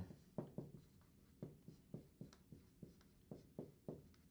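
Dry-erase marker on a whiteboard while words are written: faint, short, uneven strokes and squeaks, a dozen or so, one after another.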